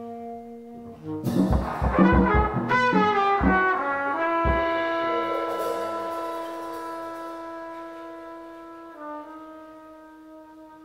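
Live improvised jazz from trumpet and tenor saxophone with drums. About a second in comes a burst of fast horn runs over drum hits. From about four seconds on, one long held horn note fades slowly and dips slightly in pitch near the end.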